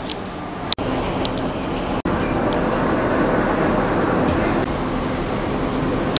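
Tram running on its rails, heard from inside the car: a steady rumble and rattle. The sound breaks off for an instant twice in the first two seconds.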